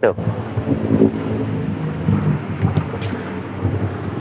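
Rear liftgate of a small van being swung up open, over a continuous low rumble; a couple of faint clicks near the end.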